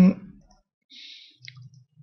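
Computer mouse clicking: one short faint click about a second and a half in and a fainter one near the end.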